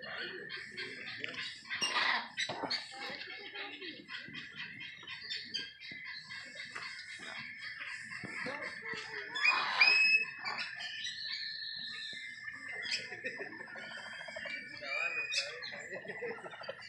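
Several birds chirping and calling, with a louder burst of calls about two seconds in and another near ten seconds in. A steady high tone runs underneath.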